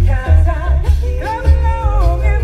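A cappella pop group singing live through a PA, several voices in close harmony over a deep vocal bass line, with chords held through the second half.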